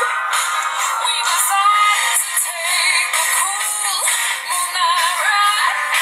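A recorded song with a woman singing the melody over instrumental backing. The sound is thin, with no bass.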